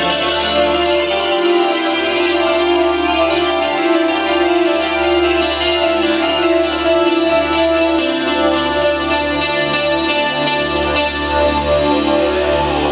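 Live rock band playing amplified electric guitars, bass, drum kit and keyboard. Held guitar and keyboard notes ring over a steady ticking cymbal pattern.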